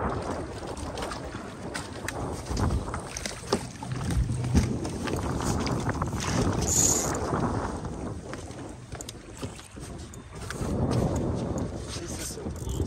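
Wind on the microphone and choppy water washing against a small fishing boat's hull, with scattered light knocks and a brief hiss about seven seconds in.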